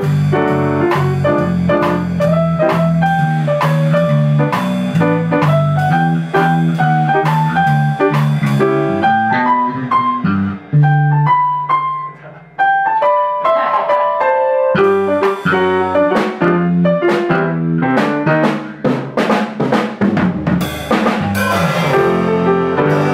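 Jazz piano trio of grand piano, electric bass guitar and drum kit playing a waltz tune rearranged in 4/4: a piano melody over a steady bass line. There is a brief drop in loudness about halfway, and the drums and cymbals grow busier near the end.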